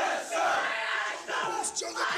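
A group of Marine Corps recruits shouting loudly together, with several overlapping bursts of shouting in quick succession.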